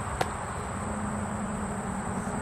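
Outdoor summer ambience: a steady high-pitched insect drone over background noise, with a single sharp click just after the start and a low steady hum that comes in about a second in.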